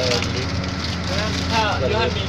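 Steady low mechanical hum and noise of a cable car cabin in motion through its station, with voices briefly near the end.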